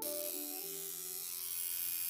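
Tattoo machine buzzing steadily as a sound effect. It starts sharply and begins to fade near the end, over soft background music.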